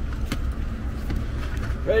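Truck engine idling with a low, steady rumble, with a few light knocks as a dog climbs up into the back seat of the cab.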